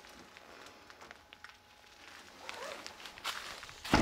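Quiet steps and small crunches on gravel, then a car's hatchback tailgate shut with one loud thud just before the end.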